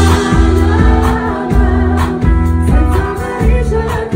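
Neapolitan pop song performed live: singing into a microphone over loud amplified backing music with a heavy bass and a steady drum beat.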